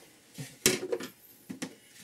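Rummaging: objects handled and moved about in a search, giving a few sharp clicks and knocks, the loudest a thump a little over half a second in.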